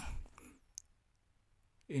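Near silence in a pause between phrases of a narrated voice-over, broken by one short, faint click just under a second in; the voice trails off at the start and resumes near the end.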